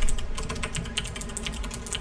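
Computer keyboard typing: a quick run of keystrokes, one click after another.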